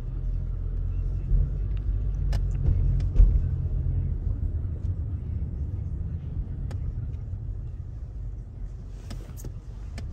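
Steady low road and engine rumble heard inside a moving car's cabin, with a few faint clicks and a light thump about three seconds in.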